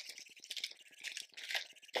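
Small foil blind bag handled in the hands, the small plastic toy pieces inside rattling in faint, rapid clicks.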